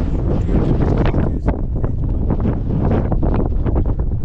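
Wind buffeting the microphone: a loud, rough rumble that flutters unevenly throughout.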